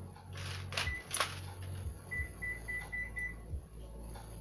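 A brief rustling clatter with two sharp clicks, then a run of five short, evenly spaced high electronic beeps, about four a second, over a low steady hum.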